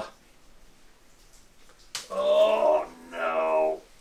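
A man's voice making two drawn-out vocal sounds, each under a second long, in the second half, just after a short sharp click. Before them there is only low room tone.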